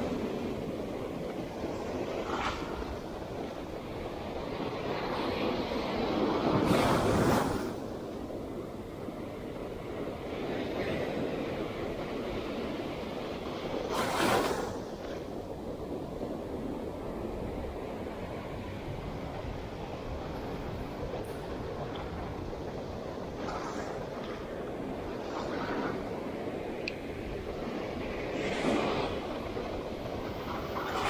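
Surf breaking and washing up the shore in a steady rush, with louder surges of breaking waves about 7 and 14 seconds in and again near the end.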